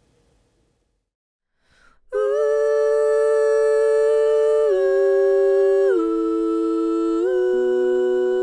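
Recorded female vocal harmony parts played back: layered voices holding long, steady notes that step together to new pitches three times. They start after about two seconds of near silence.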